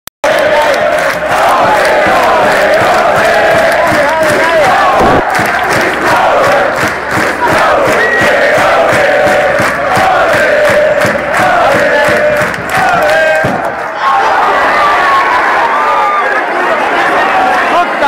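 Football stadium crowd chanting and singing together, many voices loud and continuous, with a short dip about fourteen seconds in.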